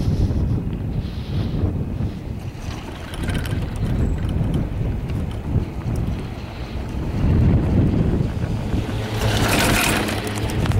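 Wind buffeting the microphone of a camera on a moving chairlift: a steady low rumble, with a louder, hissing rush and some crackling near the end.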